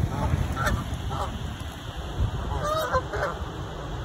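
Canada geese giving a few short honking calls, some in the first second and a cluster around three seconds in.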